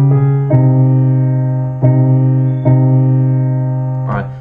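Digital piano sound played from a MIDI keyboard, slowly alternating D-flat major and C minor chords over single left-hand bass notes. Each chord is struck and left to ring and fade, with new chords about a second apart.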